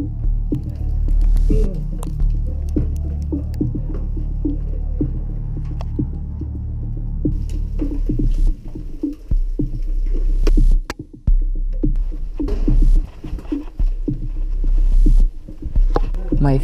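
Climbing gear in use during a rope descent: many short clicks, knocks and scrapes of rope, metal hardware and the descender against rock, over a steady low hum.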